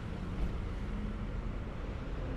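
Steady low hum of city street traffic.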